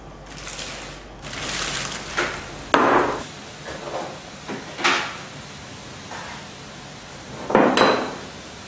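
Dishes knocked and set down on a wooden counter: a short rustle and scrape, then a few separate clacks about two seconds apart.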